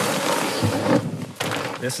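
Fabric rustling and swishing as an Enlightened Equipment Revelation 20 quilt is pulled out of a backpack. The rustle is dense for about the first second, then turns patchier.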